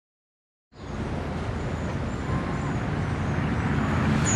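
A moment of silence, then steady outdoor background noise picked up by the course microphone: a low rumble and hiss with a few faint, thin high tones over it.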